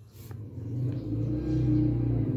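A low engine hum that grows louder over the first second and a half, then holds steady.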